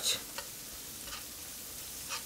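Onion, celery and garlic with flour sizzling steadily in a nonstick skillet while a spatula stirs through them, with a few faint scrapes. This is the flour being cooked into a roux before the broth goes in.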